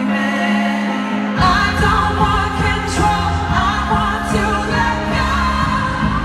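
Live pop music played loud over an arena sound system, with singing over it. A held chord plays without bass at first; about a second and a half in, deep bass and a steady drum beat come in.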